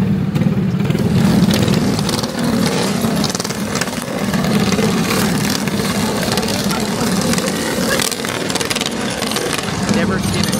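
A group of motorcycle engines running, a loud steady drone that holds throughout.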